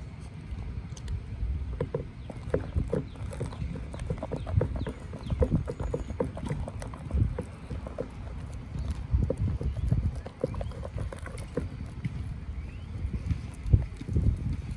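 A small plastic spatula stirring foamy puffy paint made of shaving cream and school glue in a plastic bowl, giving irregular soft clicks and knocks several times a second over a low rumble.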